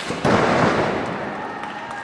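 A wrestler's body crashing onto the ring canvas: a sharp slap, then about a quarter second later a loud burst of crowd noise that fades over about a second.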